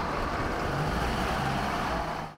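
Steady road and wind noise of cars travelling at highway speed, with a UAZ-452 'Bukhanka' van driving close alongside.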